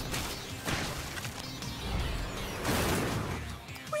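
Background music with a run of noisy swooshing and crashing sound effects from a cartoon race. The loudest surge comes about three seconds in.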